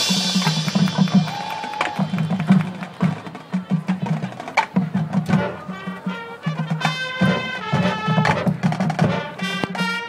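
High school marching band playing on the field: a held chord dies away, then percussion with sharp clicking hits over a low pulsing bass figure, and the winds come back in with sustained chords about two-thirds of the way through.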